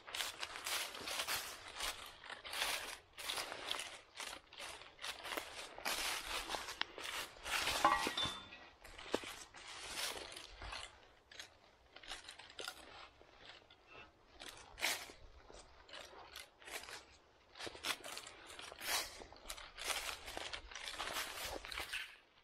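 Footsteps crunching and rustling through dry fallen leaves on the forest floor, an uneven run of steps that goes softer for a few seconds past the middle.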